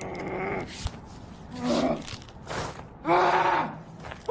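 Men grunting, groaning and yelling in a fight, with several short sharp knocks between the cries. The loudest yell comes just after three seconds.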